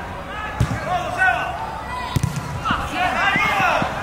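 Players shouting and calling across a soccer pitch, with a sharp thud of a football being kicked about half a second in and another about two seconds in.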